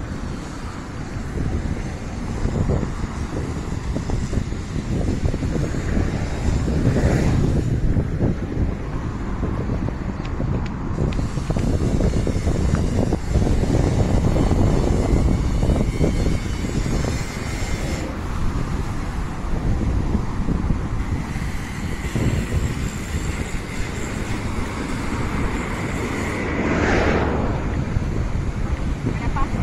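Wind rumbling on the microphone over the steady noise of street traffic.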